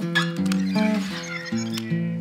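Instrumental music: plucked guitar notes picking out a melody, a new note about every third of a second.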